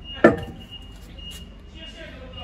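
A metal test weight set down on a steel diamond-plate floor scale platform: one sharp clunk about a quarter second in, with a brief ring.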